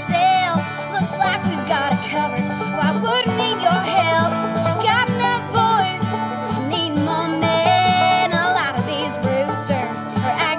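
Instrumental break of a country-bluegrass band: a fiddle plays the bending, wavering lead line over strummed string instruments and a steady beat.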